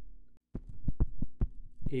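Plastic stylus tapping and clicking on a tablet screen while handwriting: a quick, irregular run of sharp taps over a steady low hum.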